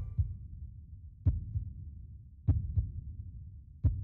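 Heartbeat sound effect: low thumps coming in pairs about once every second and a quarter, each with a short sharp onset, over a faint low hum.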